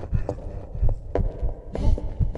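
Heavily processed, layered cartoon soundtrack with low thumps recurring about three times a second and a few sharp clicks.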